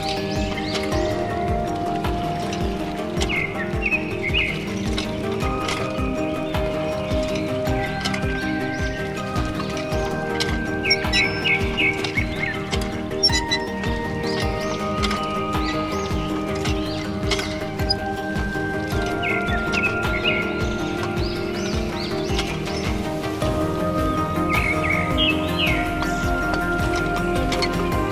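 Background music with a steady beat, with short bird-like chirps mixed in a few times.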